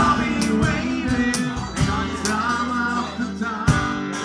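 Band music: a guitar-led pop song cover with sharp percussive hits on the beat and a held low note in the second half.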